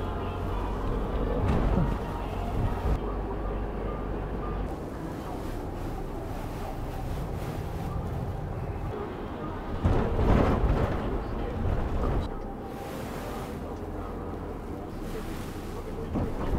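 Cabin noise inside a moving minibus: steady engine and tyre rumble on the road, with a louder rush of noise about ten seconds in.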